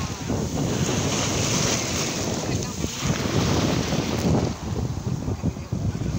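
Small sea waves breaking and washing up the beach, with wind buffeting the microphone.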